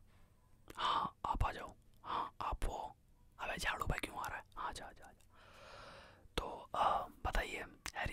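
A man whispering close to the microphone, in short soft phrases with breathy pauses.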